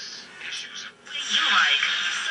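Admiral 5R37 All American Five tube radio playing an AM broadcast voice through its speaker while being tuned across the dial. The station is faint at first and drops out about a second in, then a stronger station comes in loud.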